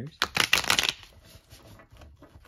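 Tarot cards being riffle-shuffled: a quick, loud run of cards flicking together lasting under a second, soon after the start. Fainter scattered ticks follow as the deck is squared up.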